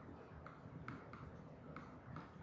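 Faint taps and light scratching of a pen writing by hand on an interactive display screen, with about four small ticks spread over two seconds.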